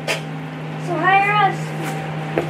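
A high-pitched voice giving one short meow-like squeal about a second in, rising then falling in pitch, over a steady low hum.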